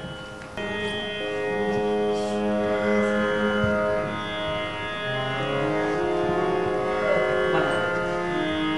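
Harmonium playing a slow melody of held, sustained reed notes that step from pitch to pitch, starting about half a second in, over a steady drone.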